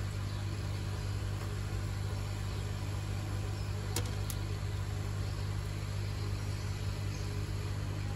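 Steady low electrical hum from the workbench, with two light clicks close together about four seconds in as a hand works on the circuit board.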